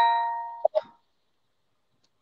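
The fading ring of a two-note ding-dong chime, its tones dying away within the first second, followed by two brief soft sounds and then silence.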